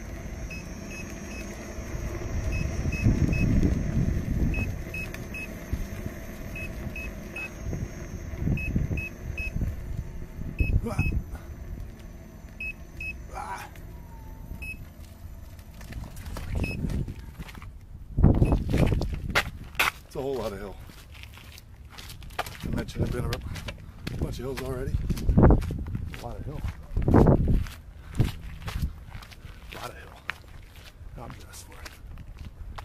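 Short electronic warning beeps in twos and threes from a personal electric vehicle running on a weak battery, over low wind and road rumble on the microphone. In the second half, loud irregular gusts of wind buffeting and knocks on the microphone take over.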